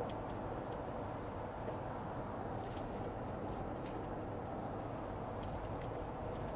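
Steady road and drivetrain noise inside a motorhome's cab at highway speed, with a few faint ticks in the middle.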